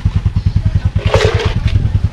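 Motorbike engine idling close by, a steady fast low putter. A short noisy burst sounds about a second in.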